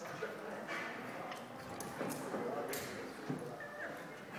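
Climbing-hall background: faint, distant voices with scattered sharp knocks and clicks.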